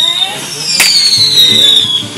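Whistling fireworks: several long shrill whistles sliding down in pitch, with one sharp bang a little before the middle.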